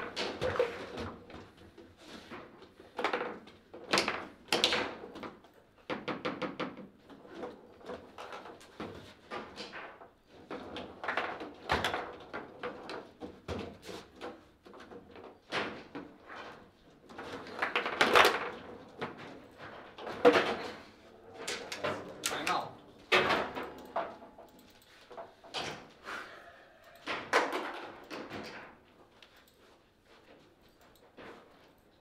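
Foosball table in play: the ball is struck and passed by the rod-mounted players, and the rods clack against the table. Irregular sharp knocks and rattles come in quick clusters, some much louder than others.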